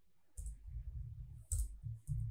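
Keystrokes on a computer keyboard: a few sharp clicks, about half a second in and again near the end, with dull thuds in between.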